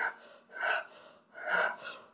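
A man's breathing: two short breaths, about a second apart.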